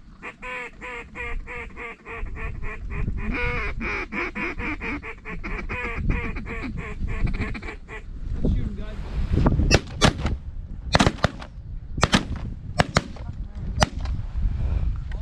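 A fast, even run of snow goose calls, about seven a second, for the first eight seconds. From about nine seconds in, a volley of shotgun shots, around a dozen in quick succession from several guns, fired at geese coming into the decoy spread.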